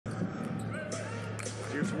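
A basketball being dribbled on a hardwood court over arena crowd noise.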